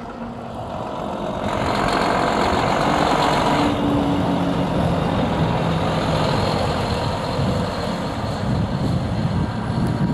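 Volvo semi-truck with a race-car transporter trailer driving past at low speed. Its diesel engine and tyres grow louder about a second and a half in and stay loud as it passes.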